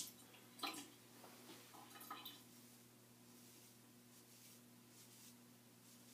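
Near silence with a low steady hum, broken in the first couple of seconds by a few faint short scrapes of a razor blade drawn across neck stubble.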